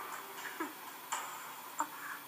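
Faint soundtrack of an anime preview through a small phone speaker during a quiet passage: a short soft tone, then two sharp ticks about a second in and near the end.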